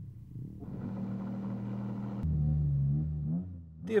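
A motor vehicle's engine running at a steady pitch. About two seconds in the note drops to a lower, louder hum, which then fades away.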